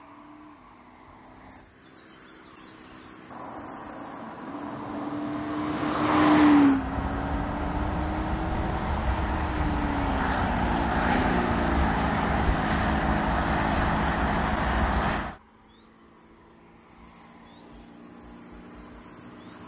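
Audi SQ5's 3.0-litre V6 engine accelerating. Its note grows louder from about three seconds in and rises in pitch until it drops sharply at a gear change near seven seconds, then pulls on steadily with a loud rush. The sound cuts off abruptly about fifteen seconds in, leaving a faint engine.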